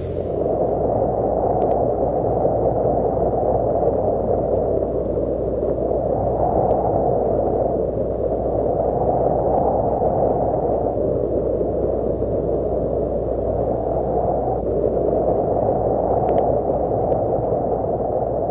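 A steady, low, muffled rushing noise with no music or voice, swelling and easing every two to three seconds.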